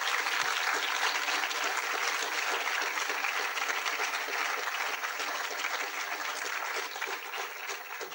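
Audience in a lecture theatre applauding, a dense steady clapping that begins to thin out near the end.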